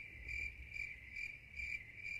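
Crickets chirping: a steady high trill that pulses about two and a half times a second.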